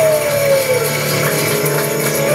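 Acoustic guitar, piano and a shaken tambourine playing together, the tambourine's jingles ringing steadily over the strummed chords. A sung note slides down in pitch within the first second.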